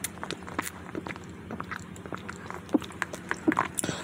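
Close-miked eating sounds: wet chewing, mouth clicks and smacks, with sips through a drinking straw. The clicks come thickly throughout, with a few louder smacks in the second half.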